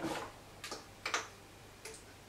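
A few light plastic clicks and taps from skincare bottles being handled at a bathroom vanity, the first the loudest.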